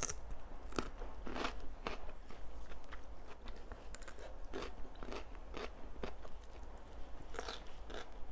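Close-miked crunching bites and chewing of raw cucumber, crisp crunches coming irregularly every half second to a second.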